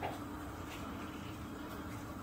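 Quiet room tone with a faint steady hum, and a couple of faint soft ticks from hands squeezing minced meat out of a plastic packet.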